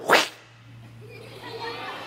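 A short, sharp mouth-made swish by a storyteller, a vocal sound effect for the mouse being thrown through the air. It is followed by faint murmuring from the young audience.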